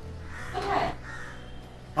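A single short call, falling slightly in pitch, about half a second in, over a steady low background hum.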